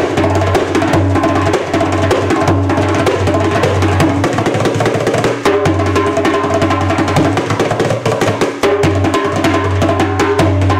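Goat-skin doumbek (darbuka) played by hand in a fast solo: dense rapid runs of sharp finger strokes near the rim over recurring deep bass strokes.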